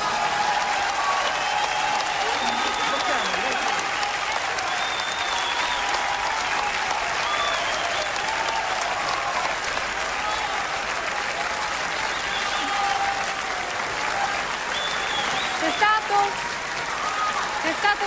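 Large theatre audience applauding steadily after a song, with scattered cheers and calls over the clapping.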